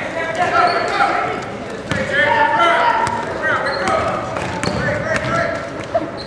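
Basketball bouncing repeatedly on a gym floor during play, with spectators' and players' voices shouting and chattering throughout, echoing in a large gym.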